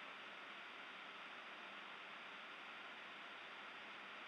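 Near silence: a faint, steady hiss of the recording's background noise, with no distinct sounds.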